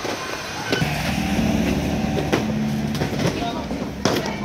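A vehicle engine running with a steady low hum, with a few sharp knocks from boxes being handled.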